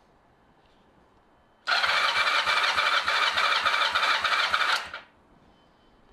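Kawasaki ZR7 inline-four spun over by its electric starter for about three seconds, starting about two seconds in, during a compression test on cylinder 1. The gauge then reads 11.5, a healthy compression.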